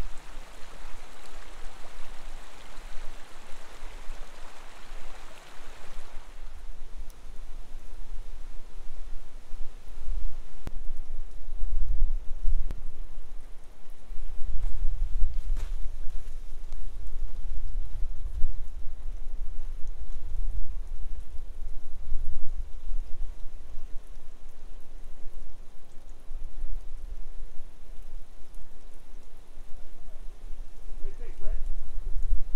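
Open creek water running past snow and ice, a steady rush that fades after about six seconds. Under it is a low, uneven rumble of wind on the microphone.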